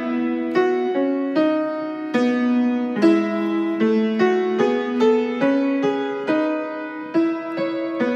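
Keyboard playing the soprano and alto lines of a choral arrangement in two-part harmony, with a new pair of notes about twice a second.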